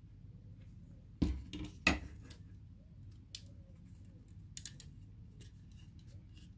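Metallic clicks and knocks as the laptop's copper heatsink-and-fan assembly is handled over the chassis: a couple of louder knocks in the first two seconds, then a few light clicks.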